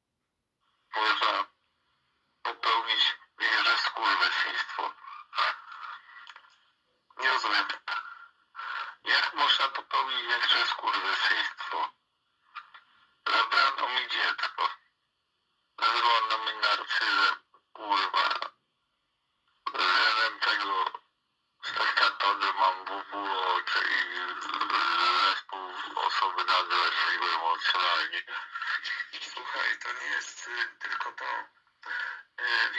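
Recorded speech from a conversation played back through a computer's speakers: talk in stretches of a few seconds with short pauses, thin-sounding with no low end.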